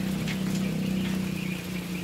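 A steady low hum, the loudest sound throughout, with faint, short, high peeps from day-old quail chicks.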